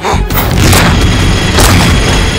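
Cartoon fight sound effects: a run of loud booming hits and swooshes, several in two seconds, over background action music.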